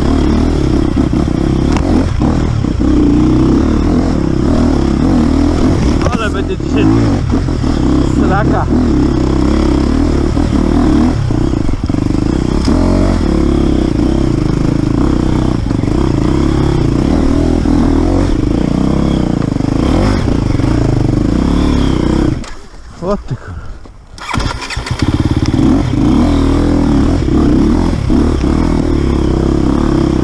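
Enduro motorcycle engine running under changing throttle on a rocky forest trail, with short knocks from the bike over rocks and roots. About two-thirds of the way through, the engine sound drops away for about two seconds, then comes back.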